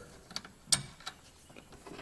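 A few small metallic clicks as a lock washer is fitted over the inverter's threaded DC terminal stud and cable lug, with one sharper click about three-quarters of a second in.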